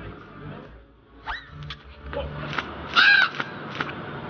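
Crow cawing twice in a drama's soundtrack: a short rising call just over a second in, then a louder, harsher caw about three seconds in.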